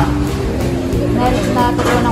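Voices over background music, with a steady low hum beneath.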